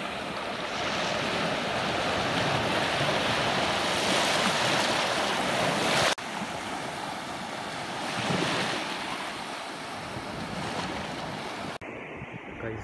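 Small sea waves washing up the shore in foam, the surf rising in a long swell that cuts off suddenly about halfway, then swelling again a couple of seconds later.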